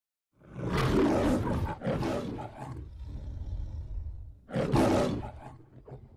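The Metro-Goldwyn-Mayer logo lion roaring: two loud roars close together starting about half a second in, a lower rumble, then a final loud roar about four and a half seconds in that fades away.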